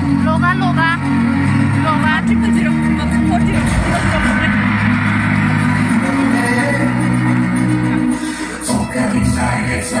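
Music with a singing voice, played loud.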